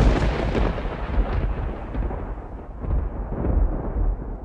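Rumble of thunder, a sound effect: it rolls on with a deep low rumble under a fading hiss and swells again about three and a half seconds in.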